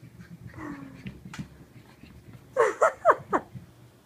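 Boston terrier puppy yipping: four short, loud cries in quick succession in the second half, each sliding down in pitch, after some soft scuffling.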